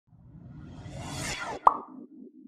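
Animated logo sting sound effect: a rising swell that builds for about a second and a half, then a single sharp pop, the loudest moment, with a short fading tail.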